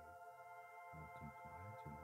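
Faint ambient background music: a held synthesizer drone of several steady tones.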